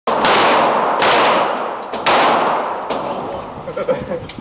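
Glock 19C 9mm pistol firing three loud shots roughly a second apart, each ringing out and fading in the reverberant indoor range, followed by fainter sharp cracks.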